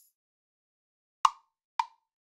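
GarageBand's metronome playing its count-in before recording: two short woodblock-like clicks a little over half a second apart (110 BPM), starting just past a second in. The first click, the accented downbeat, is louder.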